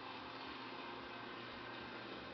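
Faint steady low hum with an even hiss, with no distinct events.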